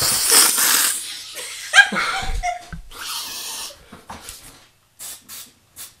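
A man inhaling hard through his nose into his cupped hands, a long noisy sniff lasting about a second, then a burst of laughter around two seconds in, a short hiss about three seconds in, and a few short sniffs near the end.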